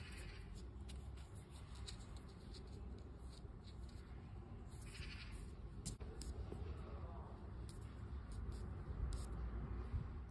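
Faint handling noises, light rustles and small clicks, as self-adhesive foam weatherstrip is pressed onto a wooden frame by hand, over a low steady rumble.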